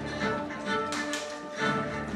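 Live symphony orchestra and acoustic band playing an instrumental passage, with bowed strings sustaining held notes and two sharp percussive hits about halfway through.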